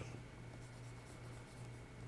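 Faint scratching of a stylus drawing strokes on a graphics tablet's surface, over a low steady hum.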